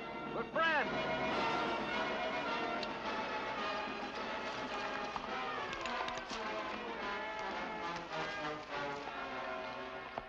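Dense film soundtrack: many overlapping raised voices mixed with dramatic orchestral music, holding a steady level, with a few sharp knocks scattered through it.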